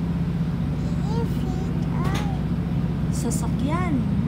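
Passenger train carriage heard from inside: a steady low rumble and hum, with a few soft voice sounds over it.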